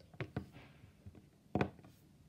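A plasticine model car handled on a tabletop: two light taps within the first half second, then a louder knock about one and a half seconds in as it is set down.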